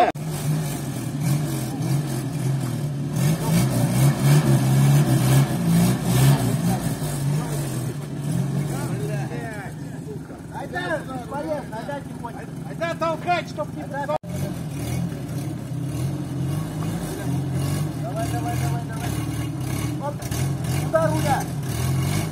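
UAZ off-road vehicle's engine running hard under load as the stuck 4x4 tries to drive out of deep mud, with men shouting over it. The engine note holds fairly steady and breaks off for an instant about fourteen seconds in.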